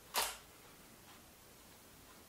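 Digital SLR camera's shutter in live view: a single short mechanical clack about a fifth of a second in, the close of a shutter release.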